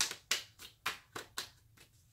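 A tarot deck being shuffled by hand: a run of crisp card slaps, about four a second, that stops shortly before the end.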